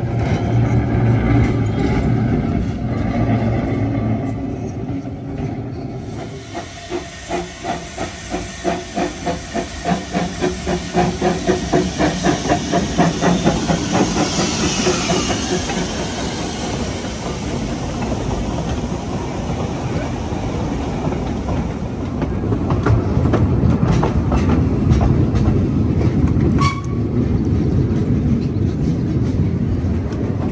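Narrow-gauge steam locomotive starting away: its exhaust chuffs begin slow and quicken steadily, with a hiss of steam. Then comes the steady rumble of the train running.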